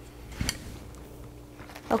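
Mostly quiet room tone with one short, light knock about half a second in, as an item from the box is handled or set down.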